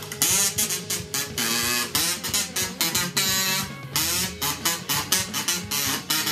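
A kazoo playing a quick tune of short buzzing notes, some of them bending in pitch, over a backing music track.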